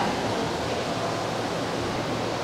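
Steady rushing noise of running water, even throughout with no distinct knocks or splashes.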